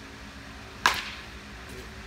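A baseball bat striking a pitched ball once, a single sharp crack with a brief ring, a little under a second in, over a steady low hum.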